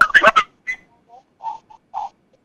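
A brief burst of speech, then faint, broken-up bits of a caller's voice over a telephone line, thin and garbled with echo.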